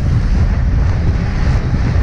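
Loud, steady wind buffeting the microphone of a camera on a road bike riding at about 34 km/h in strong wind.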